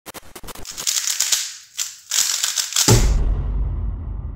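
Logo sting sound effect: a run of rapid crackling clicks that swells in two bursts, then a deep boom about three seconds in that rumbles on.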